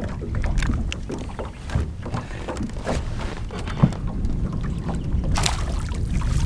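Wind rumbling on the microphone and small waves lapping at the boat's hull, with scattered small splashes and a brief splash near the end as a largemouth bass is released into the water.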